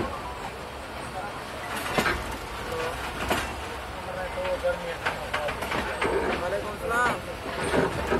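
Train running along the track, heard from inside a passenger carriage, its wheels clacking over rail joints with sharp knocks about two and three seconds in. Voices talk in the background.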